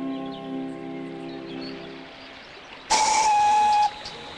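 Brass steam whistle on a small river steam launch gives one loud blast about a second long near the end, a single clear note over the hiss of steam. Before it, soft background music fades away.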